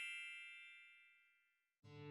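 A bright, bell-like chime ringing out and fading away over the first second, followed by silence; music starts just before the end.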